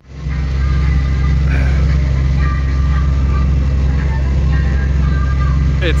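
A sailing yacht's inboard engine running steadily under way: a deep, even drone.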